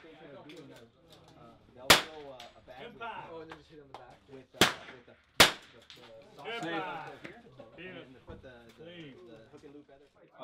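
.22LR rimfire rifle fired three times: one shot about two seconds in, then two more close together under a second apart just before the middle. Sharp cracks over low background talk.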